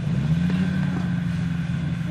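Snowmobile engine idling with a steady low hum, rising slightly in pitch just after the start and then holding.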